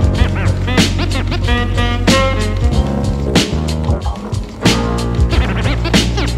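Boom bap hip hop instrumental at 93 BPM: a kick-and-snare drum pattern over a deep bass line and jazzy pitched samples, with turntable scratches gliding up and down.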